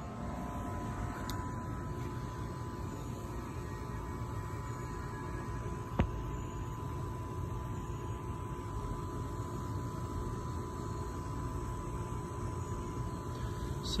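Steady low rumble of background noise with a faint steady hum, and a single sharp click about six seconds in.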